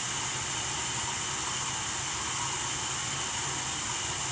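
A steady, even hiss with a low hum beneath it, unchanging throughout.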